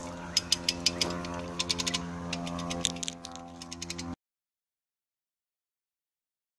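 A 2000 kg hand ratchet cable puller (come-along) being levered, its pawl clicking in quick, irregular runs as it winds in cable under the load of a snagged magnet. The sound cuts off about four seconds in.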